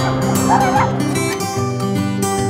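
Acoustic guitar music starts abruptly with plucked, strummed notes. A short high-pitched yelp is heard about half a second in.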